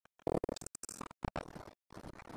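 Wireless lavalier mic link breaking up at long range: faint bursts of street noise chopped by sudden complete dropouts, the signal cutting in and out several times.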